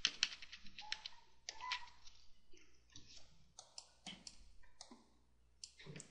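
Faint clicking of computer keys: a quick run of clicks at the start, then scattered single clicks.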